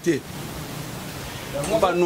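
A steady hiss of background noise fills a pause in a man's speech, and his voice starts again near the end.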